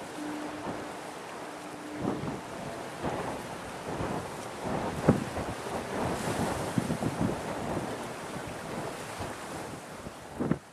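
Wind buffeting the microphone in irregular gusts and thumps over a steady wash of harbour water. A faint steady hum sounds during the first two seconds.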